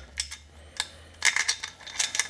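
Light metallic clicks and clinks as a steel bolt and spacer are slid through the mounting ear of an alternator: a few single ticks, then a quick cluster about a second in.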